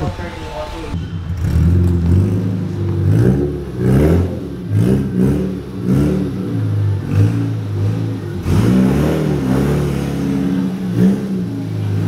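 A car engine being revved up and down, its pitch rising and falling several times, with voices over it.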